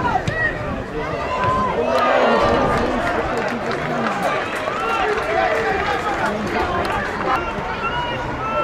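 Football match sound: scattered shouts and calls from players and spectators over a steady crowd murmur, swelling briefly about two seconds in.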